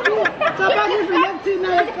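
Chatter: people talking over one another at a table.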